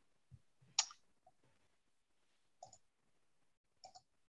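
A few faint computer mouse clicks while a screen share is set up, the sharpest and loudest just under a second in and a quick pair near the end.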